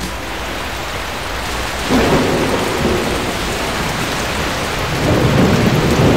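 Steady heavy rain with rolling thunder, the thunder swelling about two seconds in and again about five seconds in.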